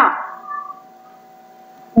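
A man's spoken word trailing off, then a pause holding only a faint steady hum made of a few level tones.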